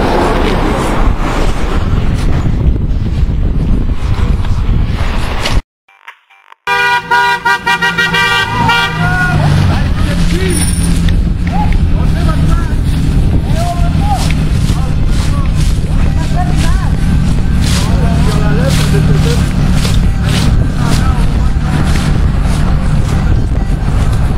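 Loud rough noise for about five seconds, then a second of dropout. After it a car horn honks in quick repeated toots for a few seconds, followed by a steady car engine hum with shouting voices over it.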